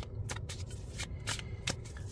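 A deck of large tarot cards shuffled by hand, the cards sliding and tapping against each other in an irregular series of short clicks, over a low steady hum.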